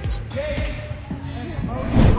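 Basketballs bouncing in a gym during a game, with voices in the background.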